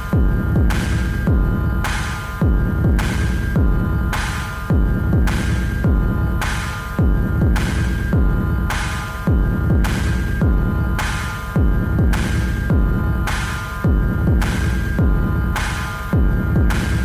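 Live experimental techno with a pulse about twice a second over a dense, humming low drone and steady high tones. About every two seconds a louder bass swell comes in and slides down in pitch.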